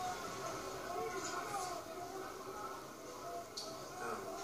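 Television broadcast of a harness race heard through a TV speaker in a small room: a faint, indistinct commentator's voice.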